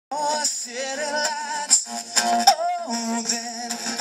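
Live acoustic song: two acoustic guitars strummed through a PA system, with a male voice singing over them.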